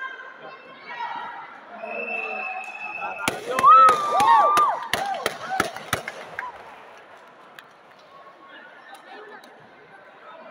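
A quick run of about eight sharp slaps over two and a half seconds, with a loud, high shout among them, from a taekwondo exchange; voices from the hall around it.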